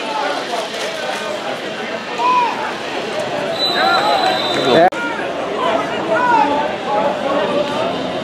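Overlapping shouts and calls from players and sideline spectators, with no clear words. A steady high tone sounds for about a second around the middle, and the sound cuts off abruptly just before the five-second mark before the voices resume.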